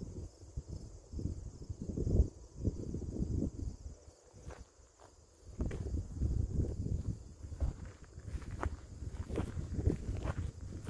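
Footsteps through grass, with wind rumbling on the microphone; it goes quieter for a moment around the middle.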